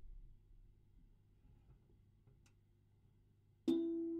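Quiet low room tone with a faint click about halfway, then near the end a single music-box note is plucked from the steel comb and rings on as a clear tone with fainter overtones, slowly dying away.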